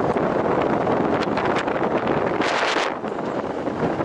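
Wind buffeting a helmet-mounted camera's microphone high on an exposed platform, a steady rushing noise with a brief louder hiss about two and a half seconds in.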